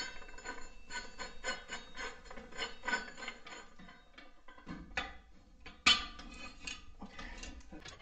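Threaded screw of an adjustable steel post being turned by hand to snug its plate against the joist: a run of small clicks and rubs. Two sharper knocks come in the second half.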